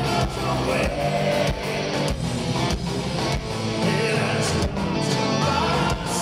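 Heavy metal band playing live at full volume: electric guitars over a pounding drum beat, with a male singer's vocals.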